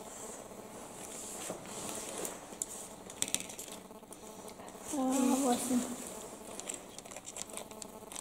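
Soft rustling and a few small clicks as children handle board-game pieces on a wooden table, with a child's brief "A" about five seconds in.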